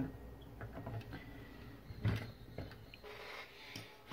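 Quiet handling noises of a cable and connector being worked at an opened stereo unit's circuit board, with one short click about two seconds in.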